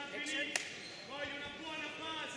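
Raised voices calling out over the fight, with one sharp smack about half a second in, typical of a punch landing in ground-and-pound.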